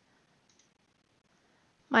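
Near silence with a faint single computer mouse click about half a second in, as the ticket-count plus button is pressed. A voice starts at the very end.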